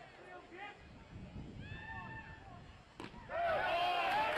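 Faint ballpark crowd voices, then about three seconds in a single sharp pop of a pitched baseball into the catcher's mitt for a called third strike, followed at once by louder shouting voices.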